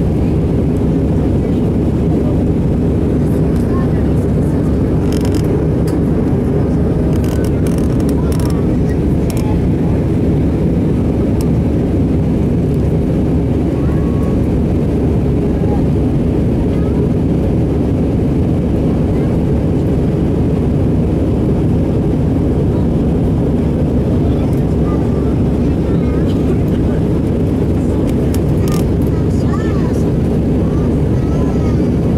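Steady jet engine and airflow noise heard inside the cabin of an Airbus A319 in flight, with a few faint clicks.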